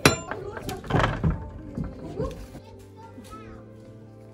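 A brass barrel bolt on a wooden door slid back with a sharp metallic clack right at the start, followed by a few duller knocks about a second in as the door is worked open. Steady background music comes in after the halfway point.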